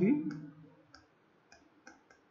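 A word spoken at the start, then faint short clicks of a pen on a writing surface, about five in under two seconds.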